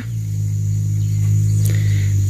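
A steady, low-pitched hum.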